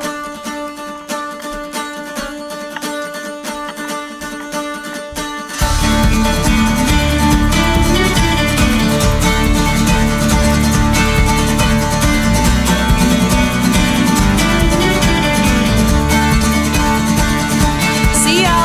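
Background music with plucked strings, light at first, then fuller and louder about five and a half seconds in as a low bass part comes in.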